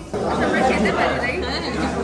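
Indistinct chatter of several voices talking at once, with the echo of a large dining room.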